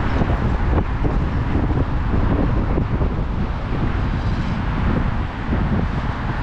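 Outdoor street ambience dominated by wind rumbling on the microphone: a loud, steady low rumble that keeps fluctuating, with traffic-like street noise under it.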